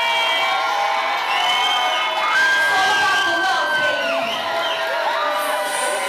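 Club audience cheering and screaming, many high voices overlapping, with a long held shriek in the middle.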